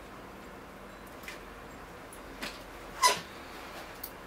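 Faint hand-work at a bonsai: a few short scrapes and clicks, the loudest about three seconds in, from scissors scraping scale insects off the fig's branches.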